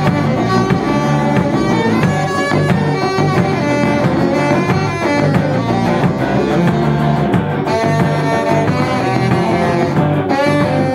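Live band playing an instrumental break with electric guitar, no singing.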